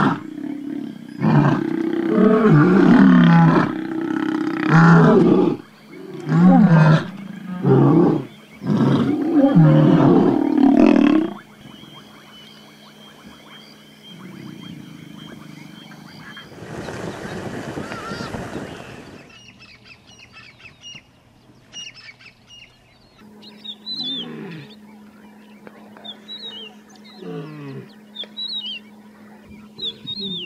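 Lion roaring: a series of loud, deep roars and grunts for about the first eleven seconds. Then much quieter, with a brief rush of noise near the middle and birds chirping faintly in the last third.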